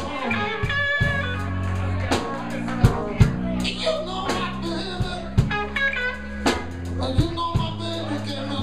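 Blues band playing live: electric guitar lead lines that bend in pitch, over bass guitar and drum kit.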